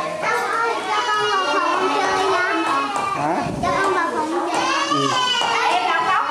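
Several voices talking over one another, children's voices among them.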